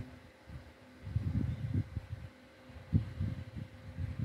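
Paintbrush dabbing and stroking acrylic paint onto a solid wooden panel, heard as irregular dull low thumps and rumbles with a sharper knock about three seconds in.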